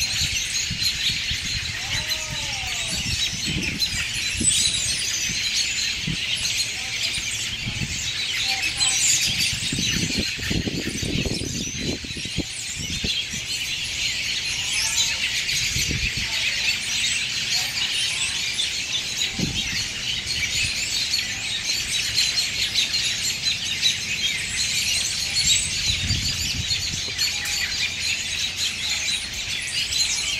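A large flock of American robins chirping and calling together without pause, hundreds of short overlapping calls forming one dense chorus. Occasional low rumbles come through under it, the longest about ten to twelve seconds in.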